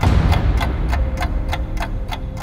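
Ticking clock sound effect, about four ticks a second, over a deep low rumble.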